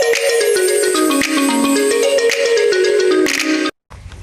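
Short intro jingle: a quick run of notes stepping down in pitch, ending in a sudden cut-off just before the end.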